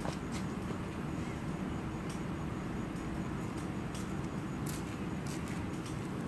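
Steady low background rumble with a few faint, scattered clicks.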